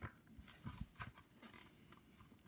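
Near silence with a few faint, short clicks and rustles of a picture book's paper page being turned by hand.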